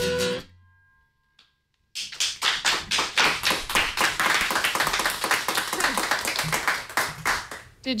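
A woman's sung final note over acoustic guitar fades out to end the song. After about a second and a half of near silence, applause follows for about six seconds.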